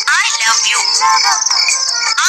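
A short clip of a voice singing rising and falling phrases over music, played back from a phone's sound-clip app.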